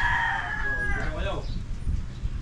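A rooster crowing: one long held call that bends down in pitch and ends a little over a second in, over a low rumble.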